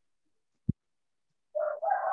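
Mostly quiet, with a single short knock, then near the end a loud pitched animal call begins and carries on past the end.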